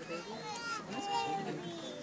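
Background chatter of a gathering, several voices overlapping, among them children's voices.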